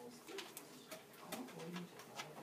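Faint, low murmuring of students' voices in a classroom, broken by several light clicks and taps.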